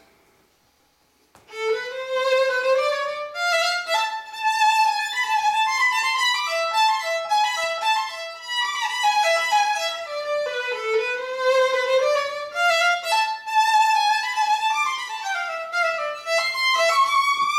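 Old violin labelled Josef Klotz, with a spruce top and a one-piece flamed maple back, played solo with the bow. After a pause of about a second it plays a quick melody of running notes.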